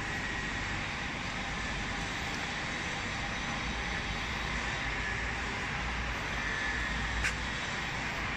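Steady running noise of EPS foam production machinery: an even rushing with a low rumble underneath, and one sharp click about seven seconds in.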